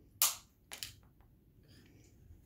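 One sharp click, then two lighter clicks close together about half a second later: small plastic pieces knocked or handled on a tabletop.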